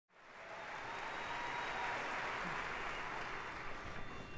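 Audience applauding, fading in over the first half second and then holding steady.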